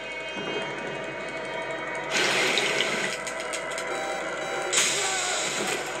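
Film teaser soundtrack: a sustained, tense music score with a rushing hiss coming in about two seconds in and a brighter hiss near the end.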